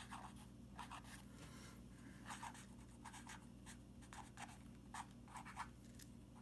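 Pen writing on paper: faint, irregular short scratches as numbers and letters are written stroke by stroke.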